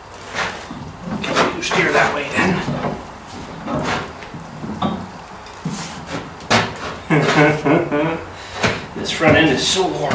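Ford 800 tractor front axle being shifted by hand on a floor jack: a series of clunks and knocks from the steel axle, radius rod and a front wheel turning on its spindle. A man's voice is heard between them without clear words, loudest near the end.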